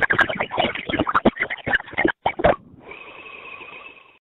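Voicemail audio over a phone line: choppy, garbled sound from the call breaking up for about two and a half seconds. It then cuts out and gives way to a steady line hiss with a faint held tone, which stops at the end.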